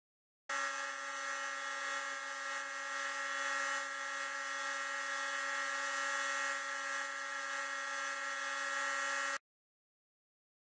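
Electric belt grinder running with a steady whine while a steel knife blade made from an old file is held against the sanding belt, grinding it. The sound starts suddenly about half a second in and cuts off abruptly near the end.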